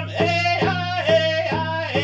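Hand-held frame drum struck with a beater in a steady beat, about two to three strikes a second, under a voice singing high, held notes.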